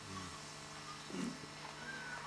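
A lull in a talk: faint room tone with two brief, soft, low sounds about a second apart.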